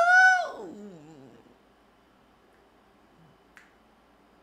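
A man singing a cappella holds a note that slides down and fades out within the first second and a half. After that the room is quiet except for a single sharp finger snap about three and a half seconds in.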